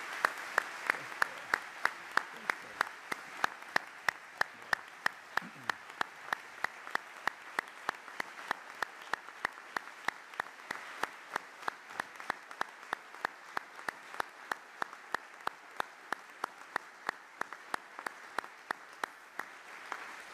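Audience applauding, with one set of sharp, evenly spaced claps, about three a second, standing out above the general clapping; the applause thins toward the end.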